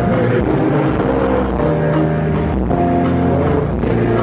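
Loud live concert music over a PA system, with heavy bass and held notes, as performers sing into handheld microphones.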